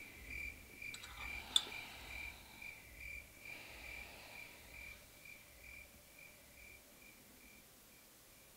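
Faint cricket chirping, an even pulse of about two chirps a second that fades toward the end. It has the sound of the stock cricket effect that marks an awkward silence. One sharp click about a second and a half in.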